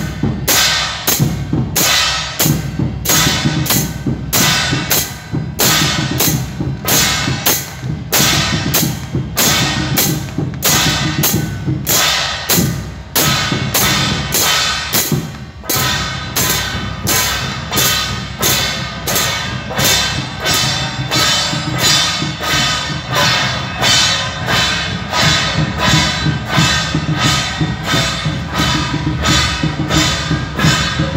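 Beiguan percussion ensemble playing: hand cymbals clashing and hand-held gongs struck with sticks in a steady beat of about two strikes a second, the gongs ringing between strikes over a low drum-like pulse.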